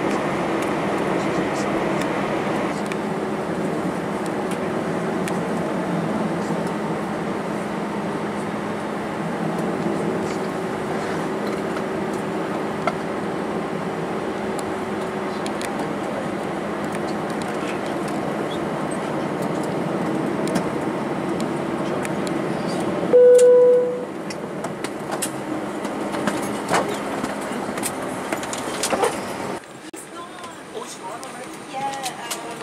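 Steady cabin noise of an Airbus A320 taxiing, its two CFM56 engines at idle under a low hum. About 23 seconds in, the noise drops suddenly and a short chime sounds, followed by light cabin clicks.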